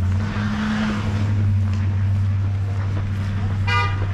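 A motor vehicle's engine running with a steady low hum, and a single very short car horn toot near the end.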